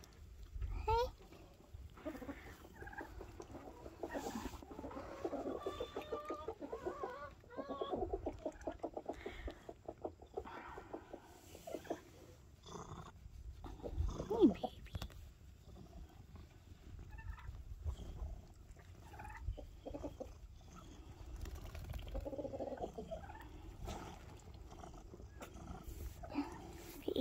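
Chickens clucking on and off in short, irregular calls, with one louder call about halfway through.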